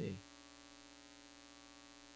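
Faint, steady electrical mains hum with a buzzy edge from the sound system, unchanging throughout, after a spoken word ends in the first moment.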